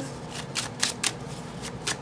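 A deck of oracle cards being shuffled by hand, an uneven run of soft card snaps and slides.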